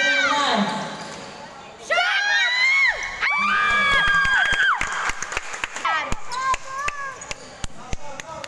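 Basketball game play: sneakers squeaking sharply on the court floor in short high squeals, loudest from about two seconds in until nearly five seconds, over repeated thuds of the ball bouncing. Voices shout now and then.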